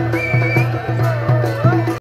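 Live folk band music for dancing: a steady low drum beat under a wavering, high melody line. The music cuts off suddenly at the end.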